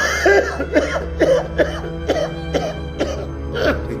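A man laughing in short, halting bursts, about two or three a second, over background music with a steady low drone.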